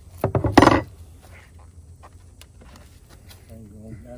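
A quick run of wooden knocks ending in a louder clatter as a beekeeper handles the boxes of a wooden long hive, then a few faint scattered taps.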